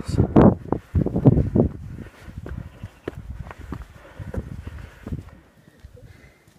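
Footsteps on a rocky mountain path, irregular short steps on stone slabs and loose stones, over faint wind.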